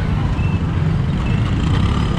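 Several motorcycle engines running at low speed in dense two-wheeler traffic: a steady low rumble.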